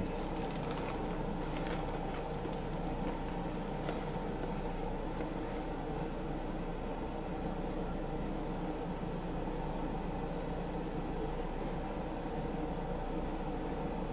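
A steady low machine hum, even in level, with no sudden sounds.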